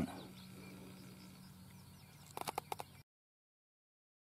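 Faint outdoor background with small birds chirping in the distance, then a quick run of sharp clicks about two and a half seconds in; the sound cuts off abruptly to dead silence about three seconds in.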